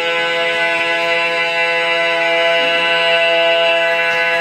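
Male barbershop quartet (tenor, lead, baritone, bass) singing a cappella, holding one long, steady final chord.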